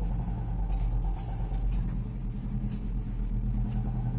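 Steady low hum and rumble of background noise, with a few faint clicks.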